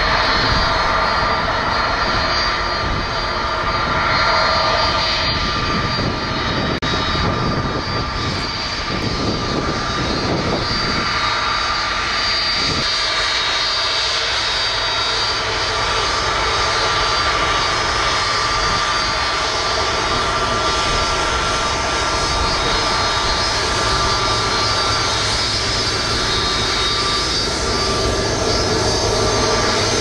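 Delta Airbus A330 jet engines running steadily as the airliner taxis past: a continuous whine with several steady high tones over a low rumble.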